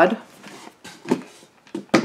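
A loose plywood shelf and a wooden box handled against each other: faint scraping and light ticks, then a sharp knock near the end.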